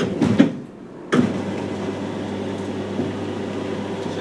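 Motorized sliding whiteboard panels being raised: the lift motor starts with a clunk about a second in and then runs with a steady hum.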